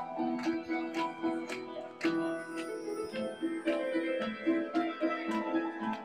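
Live instrumental music: a classical nylon-string guitar playing a melody over a steady beat of sharp percussive strokes.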